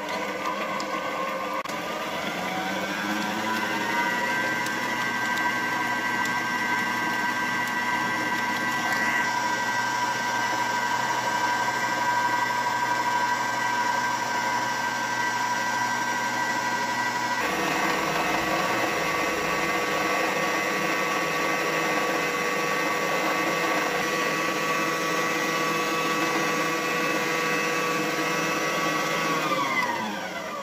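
Electric stand mixer running with a wire whisk, beating margarine, butter, egg yolks and sugar together in a stainless-steel bowl. The motor speeds up over the first few seconds and then runs steadily. Its tone changes abruptly a little past halfway, and it winds down near the end.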